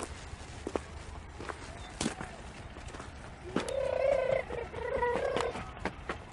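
Footsteps crunching at a walking pace on a stony dirt track, with two drawn-out high-pitched calls about three and a half seconds in, the loudest sound.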